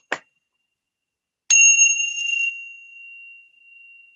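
A couple of light clicks, then a single high, bell-like metallic ring struck once, sounding suddenly and fading away over about three seconds.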